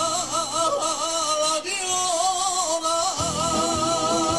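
A man singing a copla into a microphone through a PA, holding long wordless melismatic notes with a wavering vibrato over recorded backing music.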